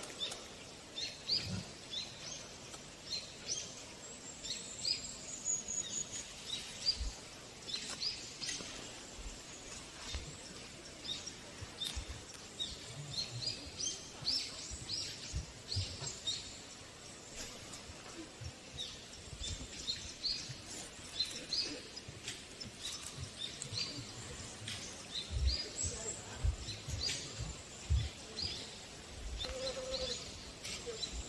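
Small birds chirping outdoors, many short high calls scattered throughout, with a few brief low thumps.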